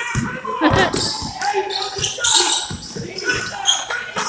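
A basketball bouncing on a hardwood gym floor several times at an irregular pace during play, with players' voices echoing in the hall.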